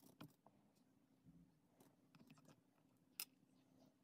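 Near silence: faint room tone with a low steady hum and a few soft clicks and taps, the sharpest about three seconds in.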